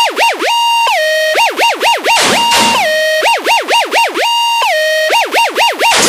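A siren-style wail in an electronic dance (dubstep) track, its pitch swooping quickly up and down several times a second, broken by brief held notes, with no bass or drums under it.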